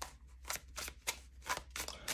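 A deck of tarot cards being handled and shuffled in the hands: a string of soft, irregular card clicks and flicks.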